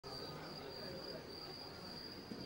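A steady high-pitched tone over even hiss, with a faint low murmur beneath, at the start of a VHS tape's playback.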